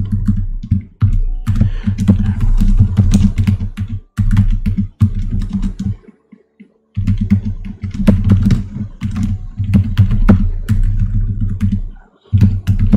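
Typing on a computer keyboard: irregular key clicks as a line of text is entered. Under them runs a steady low hum that cuts out for about a second midway.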